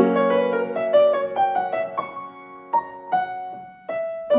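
Piano playing a slow, gentle piece: a chord, then single melody notes that ring on and fade, growing quieter just before new notes come in at the end.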